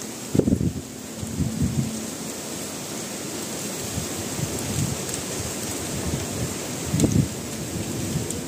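Light drizzle falling with a steady hiss while gusts of wind buffet the microphone in low rumbles, the strongest about half a second in and again near the end.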